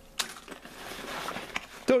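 A light click as small plastic-bagged items are set down, then soft rustling as a hand reaches into a nylon backpack pocket.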